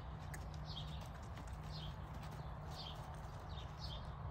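Gaited horse moving off at a walk on soft arena dirt, its hoofbeats and tack making faint clicks. A bird calls through it in short falling chirps, about two a second.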